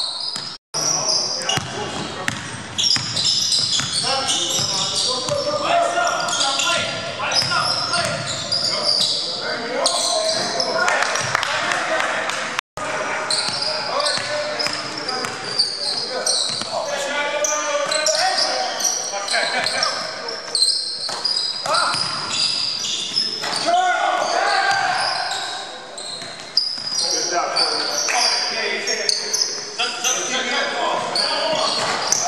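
Basketball game on a hardwood gym floor: a basketball bouncing and dribbling, sneakers squeaking and players calling out, all echoing in a large hall. The sound cuts out for an instant twice, about a second in and near the middle.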